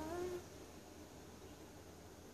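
A short animal call rising in pitch in the first half second, then only faint steady background hum.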